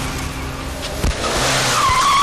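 Film sound effects of a car skidding, with a tyre squeal that bends in pitch near the end and a sharp knock about a second in.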